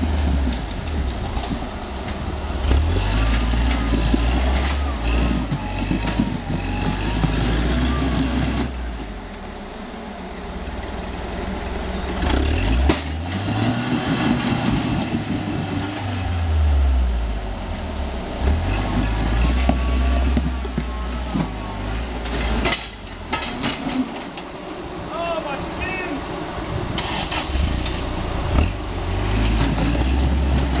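Rock-crawler buggy's engine working under load as it climbs a steep rock ledge, revving up and dropping back again and again, with a quieter lull about a third of the way in.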